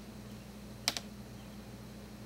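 Two quick sharp clicks, one right after the other, about a second in, over a low steady hum.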